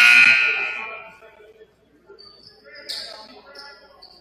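Gymnasium scoreboard horn sounding loudly, cut off about a second in and echoing briefly in the hall. A thin, high steady tone comes in about two seconds later.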